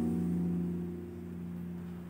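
A nylon-string classical guitar with a capo, its last chord ringing on and slowly fading away.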